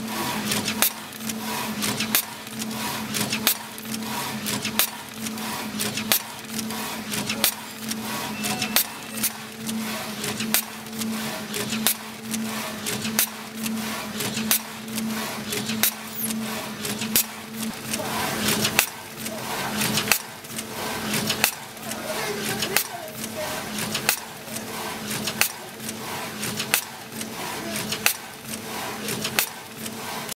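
Automatic doypack pouch packing machine running: a steady hum under a fast, regular clatter of clicks and knocks as the machine cycles, several clicks a second with a louder knock about once a second.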